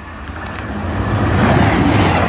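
CrossCountry diesel passenger train approaching and passing close by at speed. It is a rush of wheel and engine noise with a low rumble, growing louder through the first second and a half and staying loud as the train goes by.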